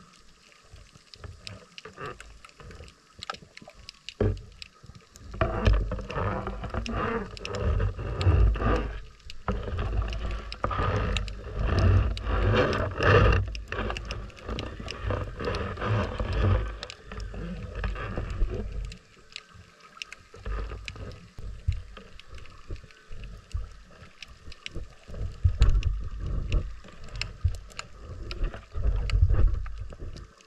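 Muffled water noise picked up by a submerged camera: irregular low rumbling surges of moving water against the housing, with scattered sharp clicks and knocks.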